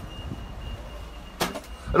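Low rumble of street traffic with a faint steady high tone, then a sharp knock about one and a half seconds in as a shop door is opened.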